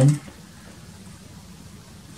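Quiet room tone, a faint steady hiss, after a man's voice trails off at the very start.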